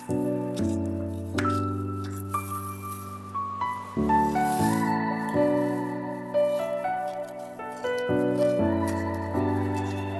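Background music: sustained chords that change every second or so.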